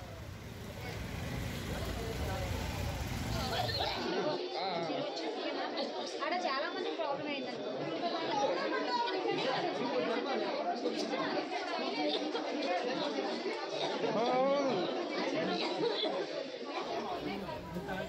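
Several people talking over one another in an agitated babble of overlapping voices. A low rumbling background under the voices drops away about four seconds in.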